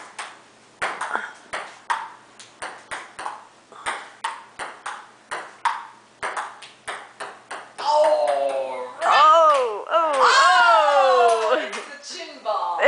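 Table tennis rally: the ball clicking quickly and irregularly off paddles and the table. About eight seconds in, loud high voices take over.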